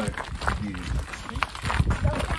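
Footsteps on a dirt and gravel walking track, a few distinct steps over a low rumble on the microphone.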